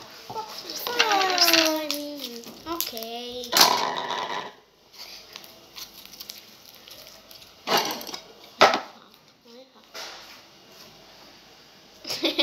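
A child's drawn-out wordless vocal sound that falls in pitch, followed by a few short noisy bursts of breath or laughter.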